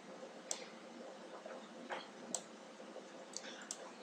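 Computer mouse buttons clicking a few times at irregular intervals, faint over a low steady hiss.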